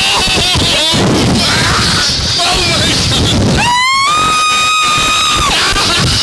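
Riders on an ejection-seat ride screaming, with wind buffeting the on-board microphone. There are short wavering cries in the first second, then one long scream from about three and a half seconds in that rises and then holds steady for nearly two seconds.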